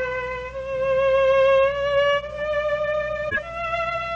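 Solo violin playing a slow melody: one long held note with a slight vibrato, stepping up to a higher note near the end.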